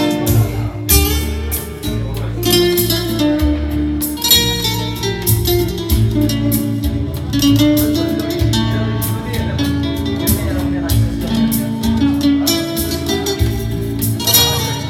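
Nylon-string classical guitar plucked and strummed in a lively tune, over an electronic organ accompaniment that holds chords and plays a bass line.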